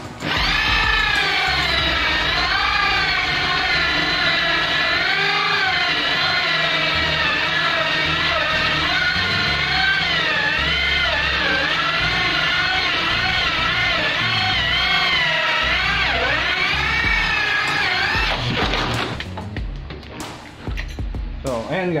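Electric drill with a hole saw cutting through a wooden door, its motor whine wavering up and down in pitch as the saw bites into the wood. It runs steadily and stops about eighteen seconds in, once the hole is through.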